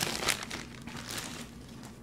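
Clear plastic bag crinkling as it is handled. It is busiest in the first half second, then fades.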